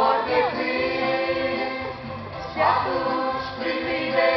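A mixed youth choir singing a gospel hymn in long held notes, with electronic keyboard accompaniment.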